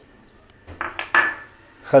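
Small glass bowls clinking as they are lifted and set down among other glass bowls. There are a few light knocks with brief high ringing about a second in.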